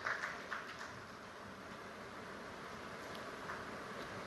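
Faint, steady applause from a conference audience, heard as an even patter with a few distinct claps in the first moment.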